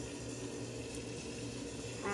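Kitchen faucet running a steady stream of hot water into a pot of frozen peas and vegetables.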